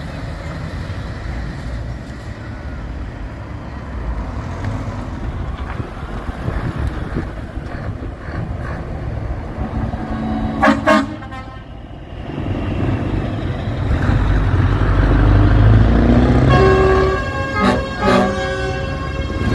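Scania truck diesel engines rumbling as the trucks pull away, the rumble swelling loudest as a Scania V8 tractor unit drives past close by. A short horn toot just past halfway, and a truck horn sounding again near the end.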